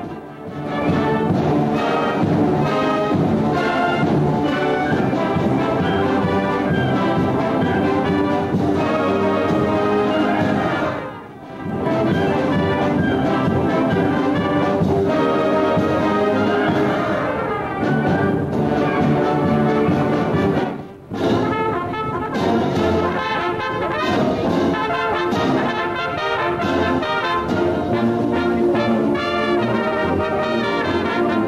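High school concert band of wind and brass instruments playing a piece. The music breaks off briefly three times: near the start, about eleven seconds in and about twenty-one seconds in.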